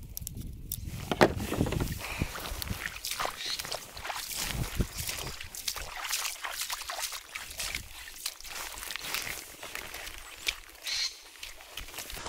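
Irregular clicks and rustling from handling fishing tackle and moving about.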